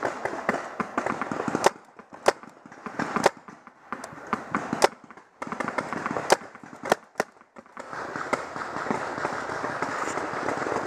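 Paintball markers firing: sharp single pops at irregular intervals through the middle, with a denser crackle of shots and impacts at the start and again near the end.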